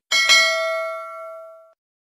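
A bell-like notification ding sound effect: struck twice in quick succession, then ringing out and fading away within about a second and a half.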